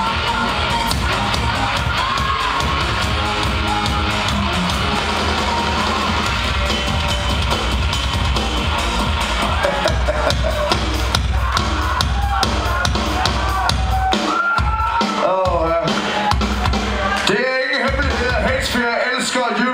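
Live metal band playing loud through a club PA: pounding drums and heavy bass with shouted vocals. In the last few seconds the drums and bass cut out in short breaks, leaving the shouting voice exposed.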